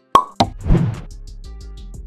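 End-card animation sound effects over music: a sharp pop just after the start, a second hit a quarter second later, then a louder noisy swell, settling into a steady low music bed.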